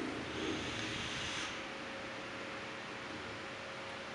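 A soft hiss of air drawn through a vape tank's airflow and heated coil during an inhale, lasting about the first second and a half. After it only a faint steady room hum remains.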